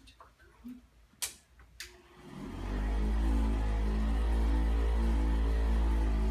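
Handheld electric massager switched on about two seconds in, its motor spinning up and then running with a steady low hum while it is pressed onto the back muscles. Two sharp clicks come before it starts.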